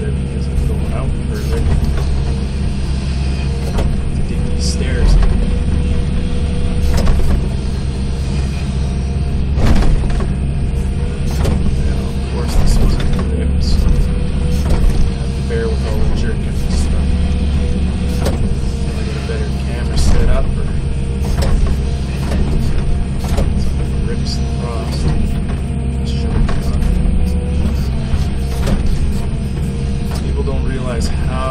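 Excavator's diesel engine running steadily under load, heard from inside the cab, with scattered knocks and scrapes as the bucket digs into dirt and rock.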